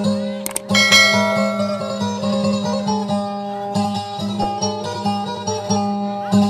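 Kutyapi, the Maguindanao two-string boat lute, playing dayunday music. A steady low drone sounds under a run of plucked melody notes.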